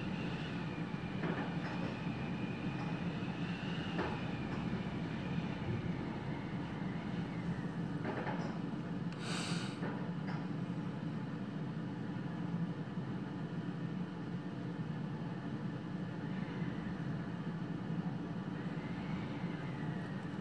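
Strong wind blowing, a steady low rumble with a faint whistle that rises and falls in the first few seconds and again near the end. There is a brief hiss about halfway through.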